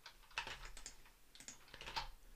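Faint computer keyboard keystrokes, a loose run of clicks starting about half a second in.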